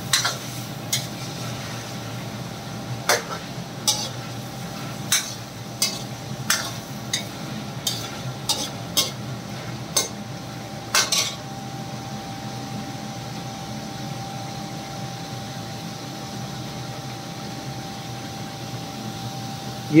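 Chicken pieces and chopped garlic sizzling in ghee in a metal karahi, being fried (bhuna). A steel ladle knocks and scrapes against the pan about fifteen times through the first half, then only the steady sizzling goes on.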